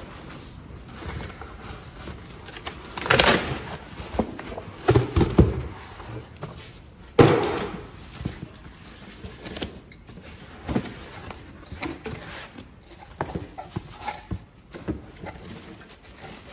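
Cardboard boxes being opened and handled, with flaps and box walls rubbing and scraping and scattered knocks. The loudest, sharpest knock comes about seven seconds in.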